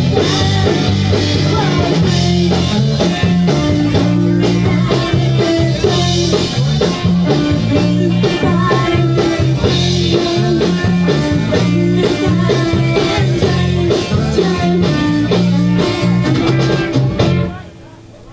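Live garage-rock band, electric guitars, bass and drum kit, playing the closing bars of a song, recorded at a club gig. The music stops abruptly about a second before the end.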